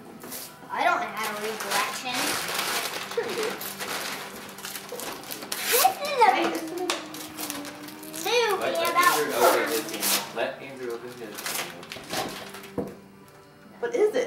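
A child's voice talking and calling out indistinctly, with one long drawn-out vocal sound about halfway through. In the first few seconds there is a stretch of crackling and rustling.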